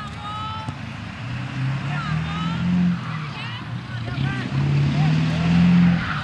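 A motor vehicle's engine accelerating, its pitch climbing, dropping about halfway through, then climbing again to its loudest near the end. Faint shouting voices come from across the field.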